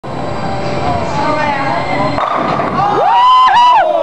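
Bowling ball rolling down a wooden lane with a steady low rumble for about two seconds, then a person lets out a long, rising shout that is held near the end.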